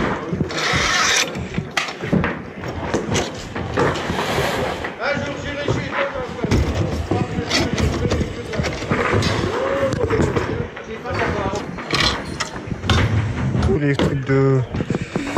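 Chrome drum stands and hardware being taken apart and handled, with repeated metal clinks and knocks, and voices talking in the background.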